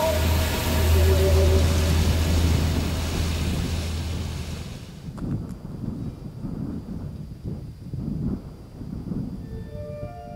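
Rushing stream water under held music tones, fading away over about the first five seconds. After that, uneven low rumbling.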